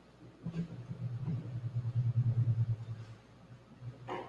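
A low, fluttering rumble that builds to its loudest a little past the middle and dies away shortly before the end.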